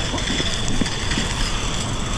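Water rushing steadily from a flowing fire-hose nozzle, with a low rumble underneath.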